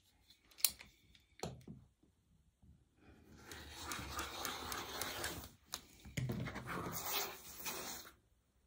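Rotary cutter blade rolling along a ruler through sewn cotton fabric strips on a cutting mat: a long scratchy cut beginning about three seconds in, then a second shorter stretch of the same scraping sound near the end. A couple of light taps come first, as the ruler is set.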